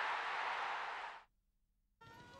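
A crowd cheering and applauding, which cuts off suddenly a little over a second in.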